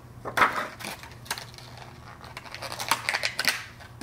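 Stiff clear plastic pen packaging being handled and opened by hand, giving a run of irregular crinkles and clicks that grow busier near the end.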